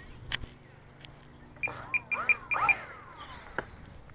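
Radio-control transmitter beeping: a quick run of six short, high beeps, with a few short falling cries over them. A single click comes about a third of a second in.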